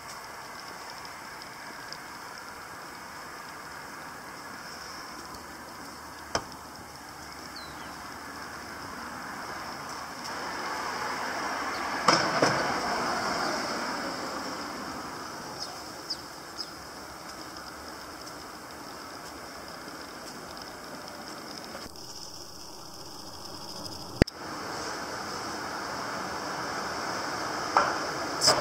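Street traffic noise, with a car passing close, loudest about halfway through and then fading. A couple of sharp clicks stand out.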